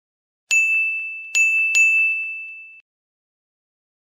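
Logo-animation sound effect: three bell-like dings on one high note, the second and third close together, their ringing fading and then cutting off.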